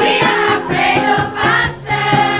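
A crowd of teenage girls singing together in unison, loudly, with a short break near the end.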